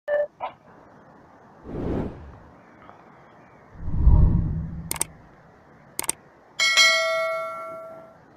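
Subscribe-button animation sound effects: two short chime blips at the start, two low whooshes, two sharp mouse-style clicks about a second apart, then a ringing notification-bell ding that fades out near the end.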